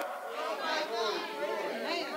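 Faint voices in the room, well below the level of the preaching: low background chatter.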